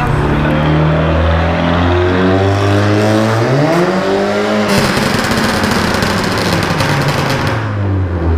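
Modified car engine pulling under acceleration while driving, its pitch climbing slowly and then rising sharply about three and a half seconds in. A loud rushing noise takes over from a little past the middle and stops shortly before the end.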